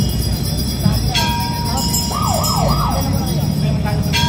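A siren gives about three quick rising yelps about two seconds in, over the steady noise of a crowd and street traffic.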